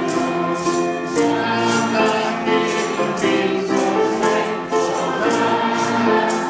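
Church choir singing a hymn with piano accompaniment, carried by a regular high jingling percussion beat of about two to three strokes a second.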